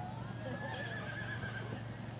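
A horse whinnying: one long call with a high, wavering pitch that lasts over a second, over the hoofbeats of a horse cantering on arena sand.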